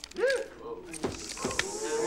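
A revolver being twirled in the hand: metallic whirring with rising-and-falling creaky whines and a few sharp clicks.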